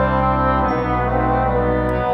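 Instrumental passage on a small brass ensemble of flugelhorns, horn, trombone and tuba holding sustained chords, which change about two-thirds of a second in and again near the end, with glockenspiel notes ringing above.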